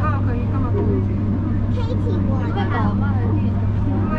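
People talking over the steady low hum of a moving electric train, heard inside the driver's cab.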